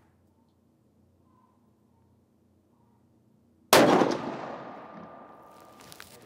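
A single rifle shot from a Sako S20 Hunter in .308 Winchester, firing a 139-grain Norma EvoStrike lead-free load, comes about two-thirds of the way in after near silence. The shot is followed by a long echo that fades over about two seconds.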